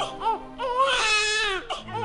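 A newborn baby crying, a few short high wavering cries with a longer one in the middle, over soft background music.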